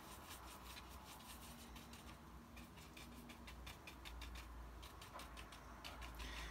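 Faint, quick clicks and light scratching of a paintbrush mixing white gouache with yellow paint on a palette.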